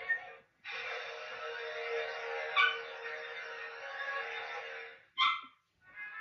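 Music from a 1990s HBO promo on a VHS tape, heard through a television speaker: thin, with no bass. It drops out briefly near the start, and just after five seconds a short sharp sound comes before it cuts out again.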